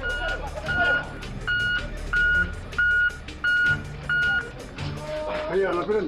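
Reversing alarm on a piece of heavy construction machinery: about seven steady, evenly spaced single-pitch beeps, roughly one and a half a second, over a low engine rumble, stopping about four and a half seconds in.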